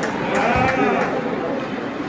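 A person's voice calling out in a short wavering cry, over rink noise with a few sharp clicks.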